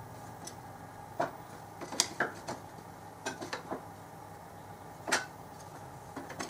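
Short metallic clinks and knocks as cut metal lifting-lug plates are handled and set against a bench vise, coming in small clusters with the loudest near the end, over a steady low shop hum.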